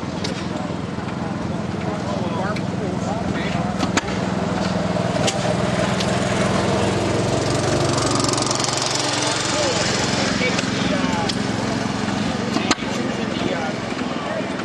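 A small engine running steadily, its pitch shifting a little midway, with people talking in the background and a couple of sharp knocks.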